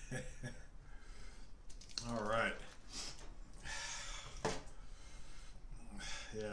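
A man's quiet, non-verbal vocal sounds: soft breaths and exhales, with a short wavering voiced murmur about two seconds in, in a small room. No music is heard.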